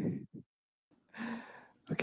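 A man sighs breathily into a headset microphone. After a short silence comes a brief, softer vocal sound.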